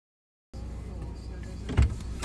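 Silence for about half a second, then a steady low rumble in a car's cabin, with one dull thump near the end.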